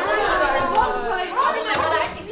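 Several young voices talking at once: overlapping, indistinct chatter.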